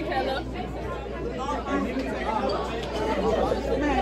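Chatter of several young people talking at once, overlapping voices with no single clear speaker.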